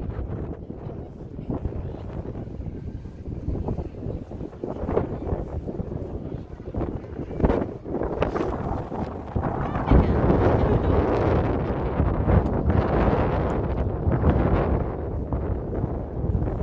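Wind buffeting the phone's microphone in an open outdoor space, a rough, rumbling noise that grows stronger about ten seconds in.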